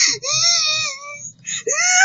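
A young child crying: long wailing cries that bend up and down in pitch, with short catches of breath between them. The last cry rises in pitch near the end.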